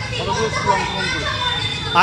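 Background chatter of several voices, children's among them, overlapping with no one voice standing out.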